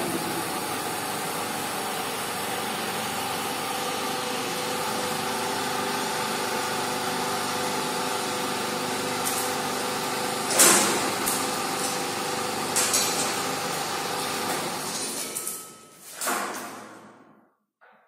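The electric hydraulic pump of a 2000 kN compression testing machine runs steadily, with a hum of several held tones, as it loads a concrete cube. About ten seconds in comes a loud sharp crack with a few smaller cracks after it: the cube failing under load. Near the end the pump is switched off and dies away.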